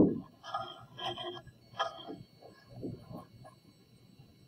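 A dull low thump right at the start, then faint, scattered voices of students talking among themselves in a classroom.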